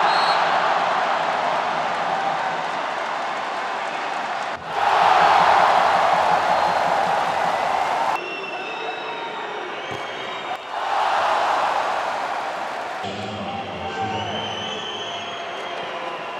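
Spectators cheering at a water polo goal, in three loud surges that start and stop abruptly where the clips are cut together. Quieter crowd noise with scattered shouts or whistles lies between the surges.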